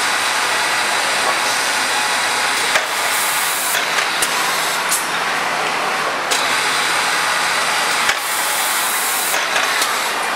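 Garment factory floor noise: a loud, steady hiss of air and machinery that shifts in strength every few seconds, with a few sharp clicks.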